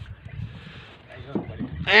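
A low rumble with faint hiss, then near the end a man's loud, drawn-out shout begins.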